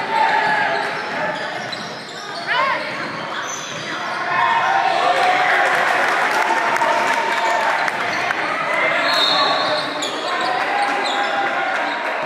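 Basketball dribbled on a hardwood gym floor, with players' and onlookers' indistinct voices in the echoing gym.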